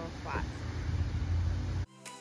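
A steady, uneven low outdoor rumble with a brief snatch of voice in the first half second. The rumble cuts off suddenly near the end.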